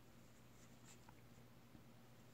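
Near silence: faint ticks and light scratching of wooden knitting needles and yarn being worked through a bind-off, a few small clicks about halfway through and near the end.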